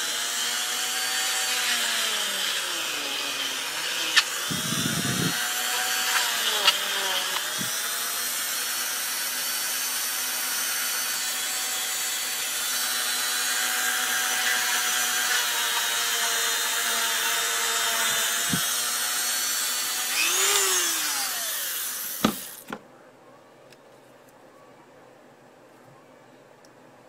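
Dremel rotary tool running with a rubber polishing tip, smoothing the rough edges of holes drilled in a plastic knife sheath. Its steady high whine dips in pitch now and then as the tip bears on the plastic, and it shuts off a few seconds before the end.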